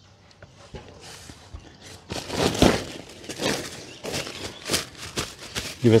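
Woven plastic weed fabric rustling and crinkling as it is pulled and smoothed over the soil by hand. It starts about two seconds in and goes on in irregular crackly swishes.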